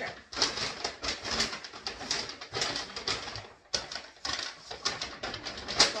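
Brown paper grocery bag rustling and crinkling as it is handled, with many sharp crackles and a brief lull partway through.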